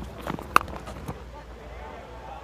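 Cricket bat striking the ball: one sharp crack about half a second in, preceded by a few softer knocks, over a steady low ground ambience.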